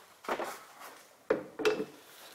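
Handling noise from the engine air filter and its plastic air box: two short knocks with some rubbing, the second, about 1.3 s in, the louder.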